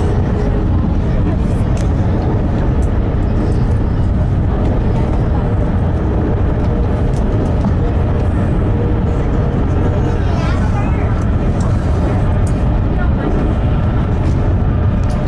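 Steady low rumble of an electric train running at speed, heard from inside the carriage, with faint voices under it.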